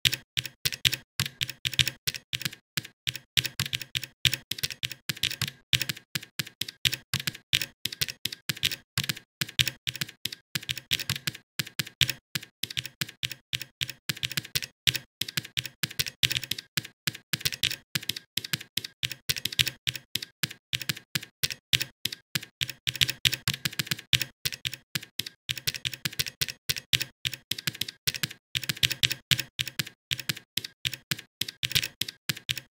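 Typing on a computer keyboard: a steady, unbroken run of quick keystroke clicks, several a second.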